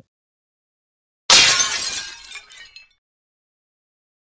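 Glass-shatter sound effect: a sudden crash just over a second in, with tinkling shards trailing off over the next second and a half.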